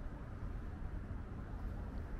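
Steady outdoor background noise: a low rumble with a hiss over it and no distinct events.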